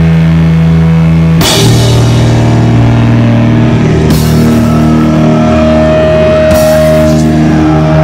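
Live sludge metal band playing slowly and very loud: heavily distorted guitar through an Orange amplifier stack, with bass and drums, holding long ringing chords. A cymbal crash comes every two to three seconds, and the chord changes about a second and a half in.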